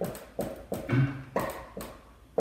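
Marker writing on a whiteboard: a quick string of short taps and scrapes, about six in two seconds, as the letters are drawn.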